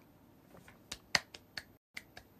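A few short, sharp clicks or taps in a quiet room, the first about a second in, the loudest just after it, then three quicker ones close together.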